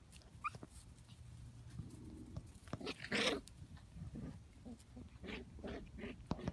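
Six-week-old Shetland sheepdog puppies play-fighting, giving short yips and squeaks, the loudest about three seconds in.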